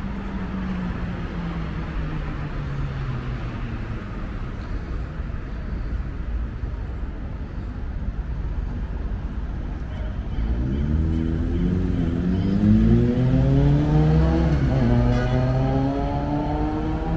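City street traffic: a steady rumble of passing cars. About ten seconds in, a vehicle engine gets louder and accelerates, its pitch rising, dipping once near the end as it changes gear, then rising again.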